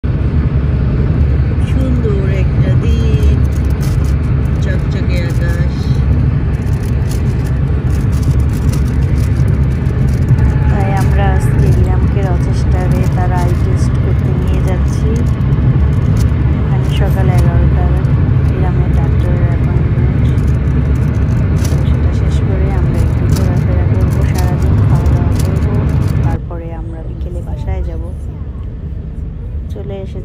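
Road noise heard from inside a car's cabin at highway speed: a loud, steady low rumble of tyres and engine, with people's voices over it. The rumble cuts off abruptly near the end, leaving a quieter background.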